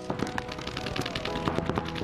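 Rapid paintball marker fire, a fast stream of sharp pops from several markers, over steady background music.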